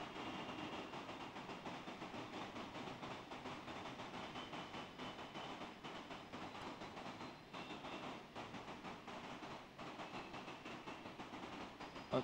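Faint, steady background room noise with no speech, an even hiss with a faint high hum in it.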